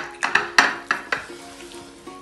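Hands slapping a ball of raw beef mince back and forth between the palms to flatten it into a burger patty: about six quick slaps in the first second or so, then only background music.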